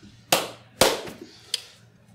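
Three sharp hand claps over about a second and a half, the last a little further apart.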